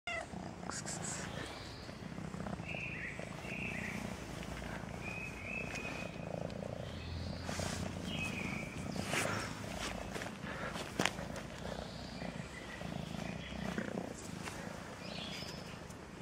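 Domestic cat purring steadily while being stroked, with short chirping calls now and then. A sharp knock stands out about eleven seconds in.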